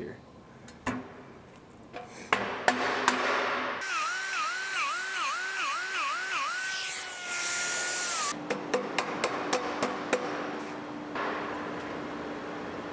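Die grinder with an abrasive roll working inside a machined stainless steel collector. Its pitch dips again and again as it is pressed into the metal, then it holds steady and winds down a little past the middle. Before it come a few sharp metal clicks and knocks as stainless tubes are fitted together.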